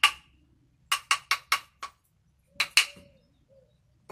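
Two very dry beech kindling sticks knocked together: a knock at the start, a quick run of about six more a second in, then two near the three-second mark. Each is a sharp clack with a clear high ringing note, the sign that the wood is really, really dry.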